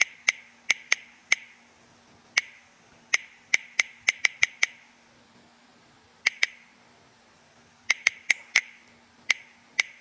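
Sharp key-press clicks of an Android phone's on-screen keyboard as a message is typed one letter at a time, coming in quick irregular runs with a pause of over a second around the middle. A faint steady hum lies underneath.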